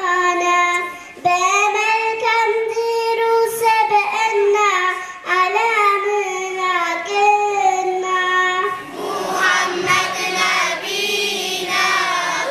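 A young girl sings a devotional song solo into a microphone, holding long gliding notes with short breaks. About nine seconds in, a group of children's voices joins in chorus.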